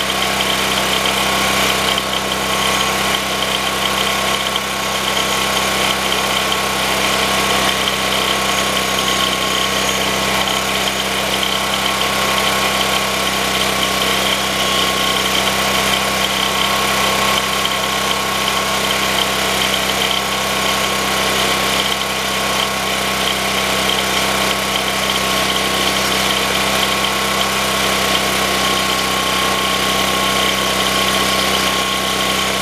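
Portable generator's engine running steadily at a constant speed, fed by wood gas from a charcoal gasifier with its gasoline supply turned off.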